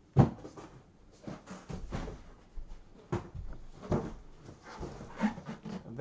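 A large cardboard box being handled and set down on a table: a sharp thump just after the start, the loudest sound, then a run of knocks and scrapes about once a second as the boxes are swapped.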